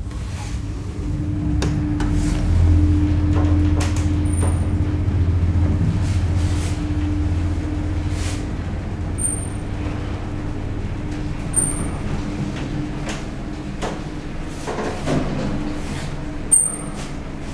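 A 1972 Haushahn passenger elevator, modernized by Schindler, in motion, heard from inside the car: a steady mechanical hum with a deeper rumble that swells a couple of seconds in and eases off past the middle, over a constant mid-pitched tone, with a few light clicks and brief high chirps.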